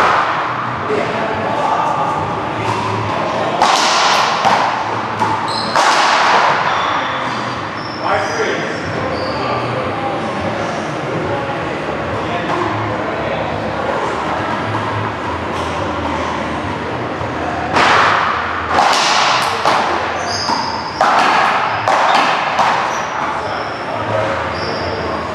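One-wall paddleball rally: a hard ball cracking off solid paddles and the wall, each hit echoing in a large hall, with sneakers squeaking on the court floor. Hits come in quick clusters about 4 s, 6 s and from about 18 to 22 s in.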